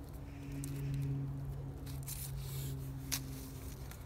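Cord being pulled tight around wooden poles as a lashing is cinched, with faint rubbing and a few light clicks. A steady low hum runs underneath throughout.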